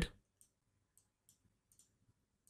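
Faint clicks of a computer mouse, about five short ticks spread over two seconds.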